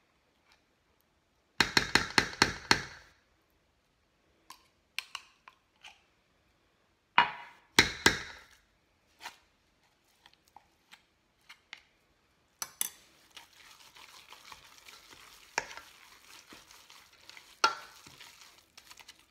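A wooden spoon and utensils knocking against a stainless steel mixing bowl: a quick run of knocks about two seconds in, another cluster around eight seconds, then steady scraping as a thick, crumbly dough is stirred in the bowl from about thirteen seconds.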